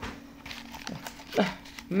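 Cardboard ready-meal box being handled and turned over: faint rustling and light taps over a steady low hum. A short falling voice sound comes about one and a half seconds in, and speech starts right at the end.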